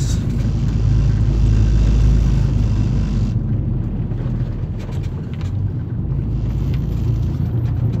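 Car driving on a block-paved street, heard from inside the cabin: a steady low rumble of engine and tyres. A higher hiss over the rumble drops away about three seconds in.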